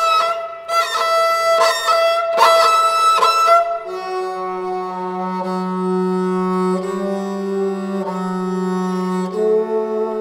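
Sarangi played with the bow on a gut string. A few short repeated strokes on a higher note give way, about four seconds in, to a long held low note that steps up slightly near the end.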